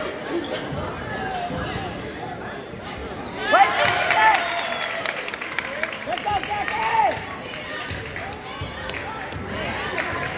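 Basketball bouncing on a hardwood gym floor during a game, with a background of spectators' voices. The crowd's shouting is loudest about three and a half seconds in and picks up again around seven seconds.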